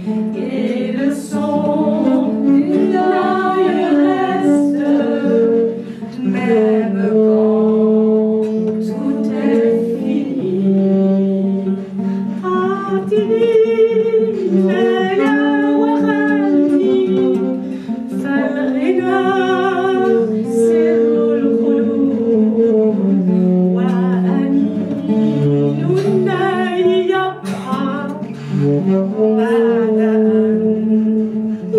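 Women's voices singing a song to an acoustic guitar strummed by the lead singer, the other two voices joining in at times.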